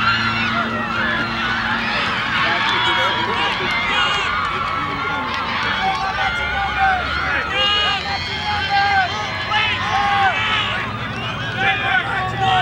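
Indistinct overlapping shouts and chatter of rugby players and spectators, many voices at once with no clear words, over a steady low hum.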